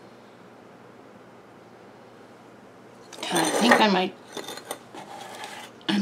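Quiet room tone, then about three seconds in a short burst of voice, followed by a few small clicks and clinks of objects being handled on a tabletop.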